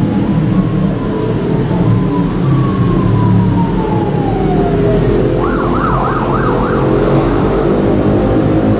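An emergency-vehicle siren: a long wail falling slowly in pitch, then a fast warbling yelp for about a second and a half, over a steady low drone.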